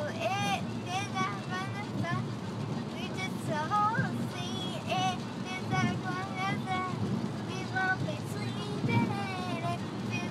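A young girl singing in a high voice, with held, wavering and gliding notes, over the steady road rumble inside a moving car.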